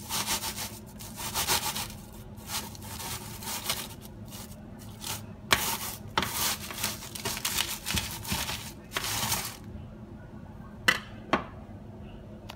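A knife sawing through a baked scaccia's crust in a series of scraping strokes, with a few sharp clicks from the blade in between.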